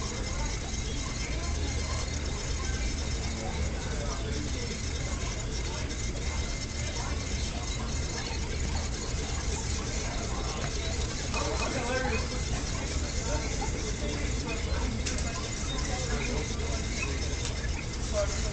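Small yellow plastic exercise wheel spinning steadily under a mouse running fast, over a steady low hum and faint voices in the background.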